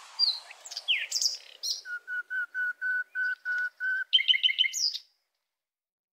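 A songbird singing: a few quick chirps and downward-sliding whistles, then a run of about eight even notes at about four a second, then a fast trill, cut off suddenly about five seconds in.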